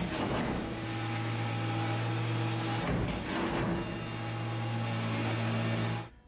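Leather rolling machine running with a steady electric hum, broken twice, at the start and about three seconds in, by a short noisy rush as the roller presses a dampened sole-leather hide.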